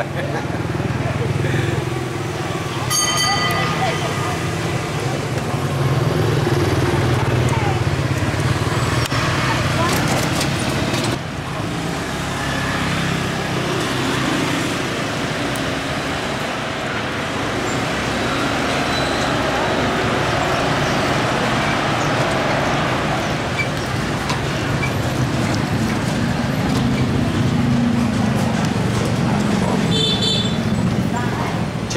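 Dense motorbike and scooter street traffic: steady engine and road noise with a short horn toot about three seconds in.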